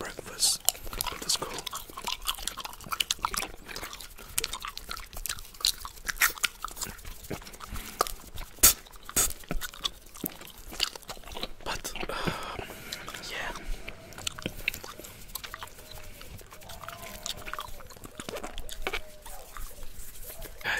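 Bubblegum chewed close to a microphone: a steady run of wet mouth clicks and smacks, with one sharp, loud click near the middle.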